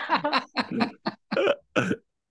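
People laughing in short repeated bursts.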